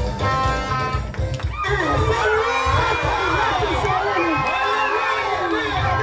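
Band music with a heavy bass beat cuts off abruptly about a second and a half in. A congregation's many overlapping voices shouting and cheering take its place.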